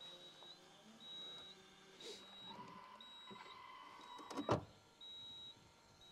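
Faint whir of the Range Rover's electrically deployable tow bar motor swinging the tow bar out, with a steady whine in the second half that ends in a click as it locks into place. A faint high tone repeats about once a second.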